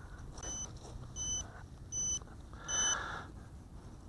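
GoolRC G85 micro quadcopter's onboard beeper sounding four short high-pitched beeps, a little under a second apart, which the pilot takes for a sign that the battery is running low.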